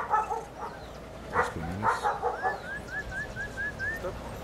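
German Shepherd dog barking twice, about a second and a half in, then a quick run of short, rising, high-pitched chirps, about five a second, near the end.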